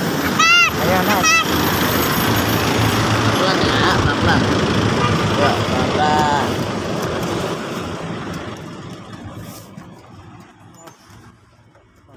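Street traffic noise as a minibus pulls up and is boarded, with brief voices shortly after the start and again around six seconds in. The sound fades out steadily over the last few seconds.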